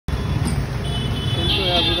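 Low, steady rumble of vehicle engines running in the street, with a thin high-pitched whine coming in about a second in and growing louder near the end. A man's voice starts just before the end.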